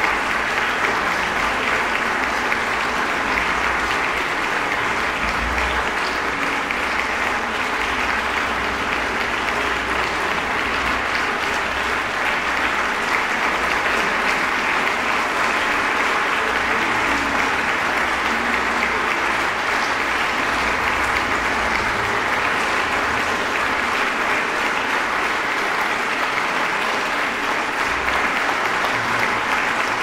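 Audience applauding steadily, a dense and even clapping.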